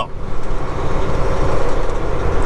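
Volvo semi truck's diesel engine running steadily as the truck rolls slowly, heard from inside the cab.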